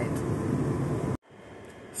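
Steady rumble of a moving passenger train heard inside the carriage. It cuts off suddenly about a second in, leaving only faint background noise.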